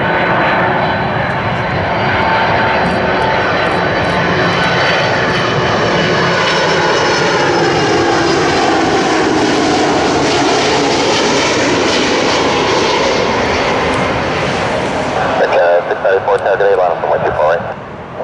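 Airbus A310 twin-jet on short final passing low overhead, its engines a loud steady rush with whining tones whose pitch sweeps down and back up as it goes over.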